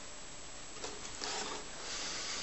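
Quiet room tone with faint rustling from a person moving while handling a violin and bow, a little stronger in the second half.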